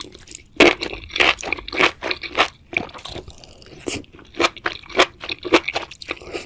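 Close-miked chewing of enoki mushrooms in thick red sauce: a quick run of crisp crunches, several a second, starting about half a second in.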